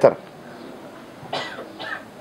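A person coughs briefly, twice in quick succession, about a second and a half in, in a pause in the speech.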